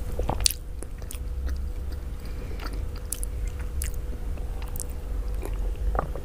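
Close-miked mouth sounds of a person eating mansaf by hand: chewing with scattered wet clicks and smacks, the loudest about half a second in, over a faint steady hum.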